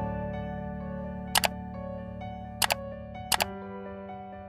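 Soft background music of sustained notes, with three sharp double clicks of a mouse-click sound effect, the first about a second and a half in, then twice more in the last second and a half, as an animated subscribe button, like icon and bell are clicked.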